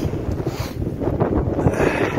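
Wind buffeting the microphone: a continuous, uneven low rumble.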